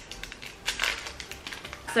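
A small individual Compeed cold sore patch packet being torn open by hand: a run of short crinkles and crackles, densest in the middle second.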